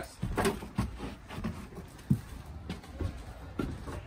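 Footsteps climbing a travel trailer's folding entry steps and onto its floor: a few irregular, hollow knocks and thumps.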